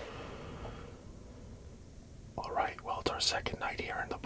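Low background hiss, then a man whispering, starting a little past halfway.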